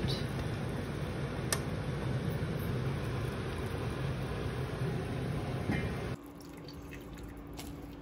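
Broth dripping and splashing back into a simmering pot as cooked chicken pieces are lifted out with metal tongs, over a steady background noise, with one sharp click about one and a half seconds in. About six seconds in the sound cuts abruptly to a quieter steady hum.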